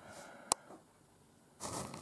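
A quiet pause in room tone with a single sharp click about half a second in. Near the end comes a short breathy noise just before speech resumes.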